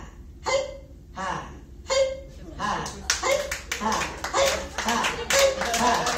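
Short vocal sounds repeated a little faster than once a second, then from about halfway through, audience clapping mixed with voices.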